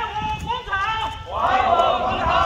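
A crowd of protesters shouting slogans together in Mandarin, the voices coming in rhythmic bursts about a second and a half apart.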